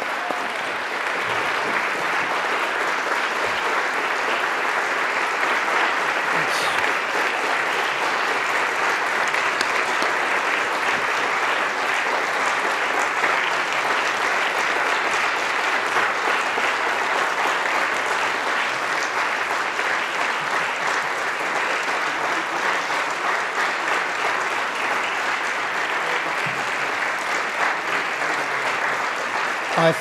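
Sustained applause from a roomful of people clapping, steady and unbroken for about half a minute.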